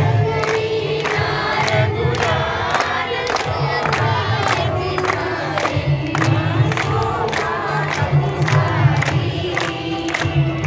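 A crowd of men, women and children singing a devotional song together, with steady, even group hand-clapping keeping the beat.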